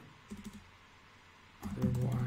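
Computer keyboard keystrokes, a few quick taps about half a second in as a code comment is typed, then a brief hum from a voice near the end.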